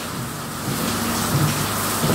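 Steady rain falling on the van body's roof, heard from inside the load bay as an even hiss that gets a little louder about a third of the way in.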